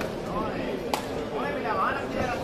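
A single sharp smack about a second in, a kick or punch landing, over people's voices shouting.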